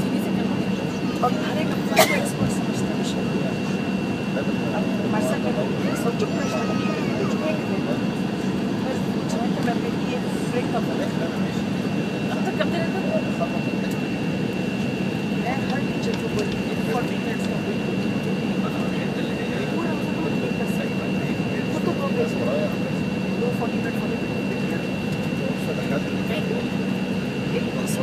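Cabin noise of an Embraer 170 taxiing, its General Electric CF34-8E turbofans at low power: a steady hum with a constant high-pitched whine, and one sharp click about two seconds in.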